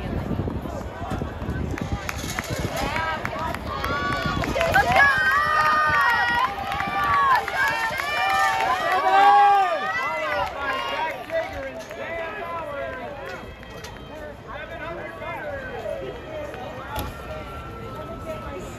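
Spectators shouting and cheering on runners in a race: several voices yelling at once in short rising-and-falling calls, loudest about halfway through, then thinning out to scattered calls.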